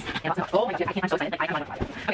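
A woman speaking softly, with light scratching and rustling as a cardboard box and its packaging are opened.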